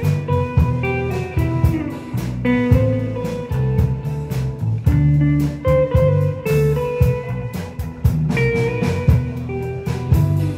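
Live instrumental rautalanka, Finnish guitar-instrumental rock: an electric lead guitar plays the melody over bass guitar and a drum kit keeping a steady beat.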